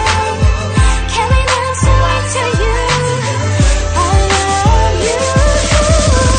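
K-pop R&B song playing: a steady beat over deep bass with melodic lines above.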